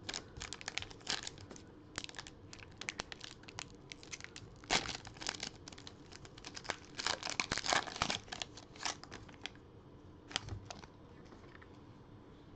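A Panini Prizm football card pack's wrapper being torn open and crinkled by hand in irregular rips and crackles. The loudest tearing comes about five seconds in and again around seven to eight seconds, with only scattered crackles toward the end.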